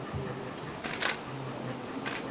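Still-camera shutter clicks: two sharp clicks in quick succession about a second in, after a soft low thump at the start.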